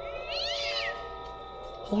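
A single high animal cry that rises and then falls in pitch, lasting under a second, over a steady droning music bed.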